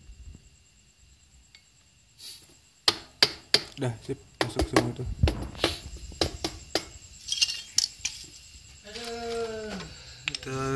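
A soft-faced mallet knocking a Kawasaki KLX 150's magneto cover onto the crankcase: a quiet start, then a run of sharp, irregular knocks for about five seconds. The cover is a tight fit over its iron bushing.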